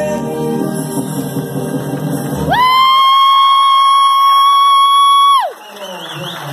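A song's accompaniment and singing, then a single high sung note that scoops up, is held steady for about three seconds with the backing gone, and falls away near the end.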